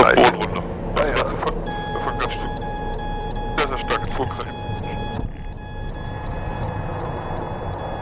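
Twin-turboprop engine and cabin noise heard inside a Piper Cheyenne's cockpit during the landing roll. Short bursts of voices come at the start and again about halfway. A steady high-pitched tone comes in about two seconds in and thins out after about five seconds.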